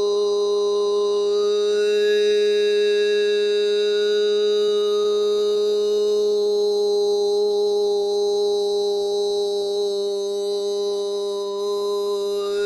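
A man's long sustained vocal tone held on one pitch, with higher overtones shifting in and out above it: channeler's overtone toning, the tones that start up to bring in the beings he channels. The level dips briefly near the end.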